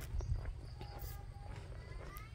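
Quiet pause outdoors: a low steady rumble of wind on the phone's microphone, with a few faint footsteps on the paved road as the camera walks forward.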